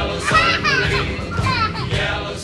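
Young children's high voices calling and squealing, over background music with singing.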